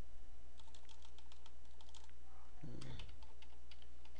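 Computer keyboard typing as a word is deleted and retyped in a spreadsheet cell: a run of quick key presses, a pause of under a second, then a second run. A steady low hum lies underneath.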